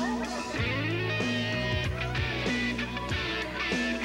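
Rock band playing an instrumental passage: guitar over held bass notes and a steady drum beat, with a drum hit roughly every two-thirds of a second.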